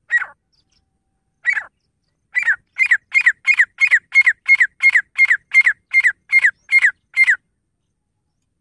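Grey francolin calling: two separate sharp notes, then a fast, even run of about fourteen falling notes at roughly three a second, stopping suddenly.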